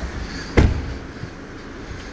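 A car door on a 2011 Audi A5 being shut: one solid thud about half a second in.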